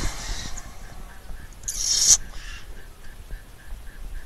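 Starter motor cranking the 1948 Bedford's six-cylinder engine, which turns over without catching after sitting unused for years. There is a short, sharp burst of hissing about two seconds in.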